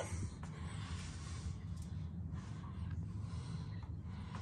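A faint, steady low hum with light rustling and handling noise, and a few soft ticks.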